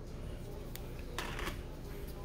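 Handling noise from a phone being moved: a sharp click about three-quarters of a second in and a brief rustle just after a second in, over low room hum.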